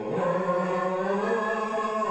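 Wordless vocal humming of a slow melody: held, gently changing notes carried on without words.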